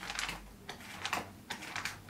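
Pages of a paper notebook being riffled with the thumb, a quick run of faint, irregular papery flicks.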